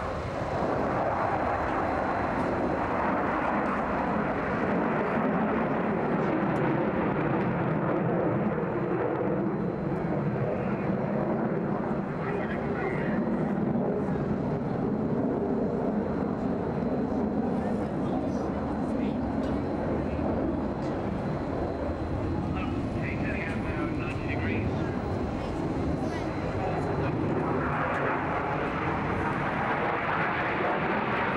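MiG-29 Fulcrum fighter jets' twin Klimov RD-33 turbofans in a flying display: a loud, continuous jet roar that drifts slowly in pitch as the aircraft move across the sky.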